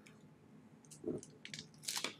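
Thin plastic sleeve crinkling faintly a few times as a fountain pen is slid out of it, starting about a second in.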